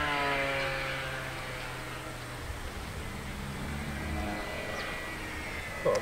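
Motors and propellers of a small twin-motor RC model plane in flight: a whine that falls in pitch over the first second or so, then a steadier, fainter drone.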